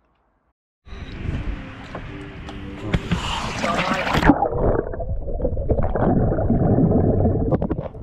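Water splashing and churning around a scuba diver entering the water beside a yacht's hull. About four seconds in, the sound turns suddenly muffled as the microphone goes under, leaving an underwater rumble and bubbling.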